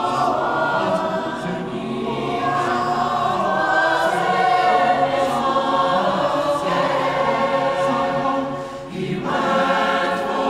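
Mixed SATB choir singing a cappella, several voice parts holding chords together; near the end the sound drops briefly for a breath between phrases, then the voices come back in.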